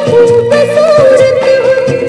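Hindi film song playing from a vinyl LP on a turntable: a held, wavering melody line over the full accompaniment, between sung lines of the song.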